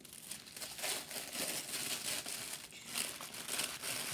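Black tissue paper crinkling and rustling in a continuous, irregular crackle as hands unwrap a candle from it.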